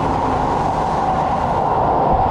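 Keihan Railway train running into an underground station along the platform: a loud, steady rush of wheel and motor noise, echoing off the station walls.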